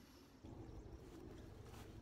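Near silence, with only faint low background noise that comes up slightly about half a second in.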